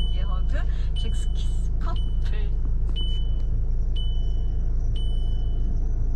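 A car's electronic warning beep, a single high tone repeating about once a second, six times in all. Under it runs the steady low hum of the idling engine, heard inside the cabin.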